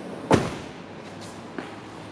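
Door of a Mercedes-Benz CL500 coupe being shut: one solid thud a moment in, then it dies away quickly.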